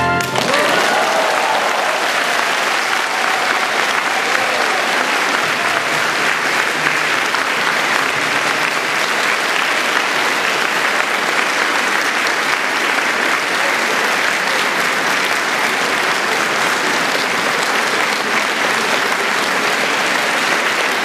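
An audience applauding steadily, with a few voices mixed in.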